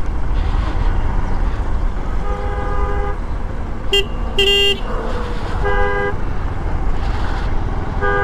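Vehicle horns honking several times over a steady low rumble of wind and motorcycle engine: a honk of about a second near two seconds in, two short higher-pitched beeps around four seconds, and another honk near six seconds.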